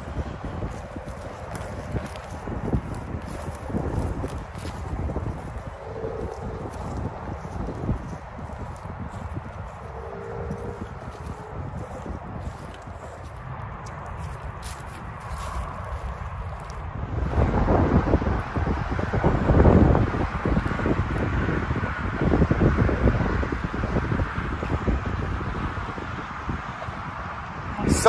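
Footsteps of someone moving fast on foot over grass and an old cracked road, with wind buffeting the handheld microphone; the rumble grows much louder about two-thirds of the way in.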